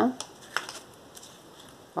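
Faint handling sounds of a needle and thread being worked through grosgrain ribbon on a cardboard template, with one sharp tick about half a second in and a few fainter ticks after.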